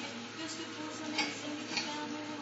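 A few light clicks, about three in two seconds, over faint background voices.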